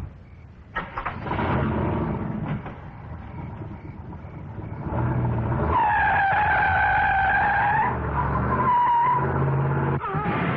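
A car drives off hard: a knock about a second in, the engine revving, then the tyres squealing for about two seconds, with a shorter squeal near the end.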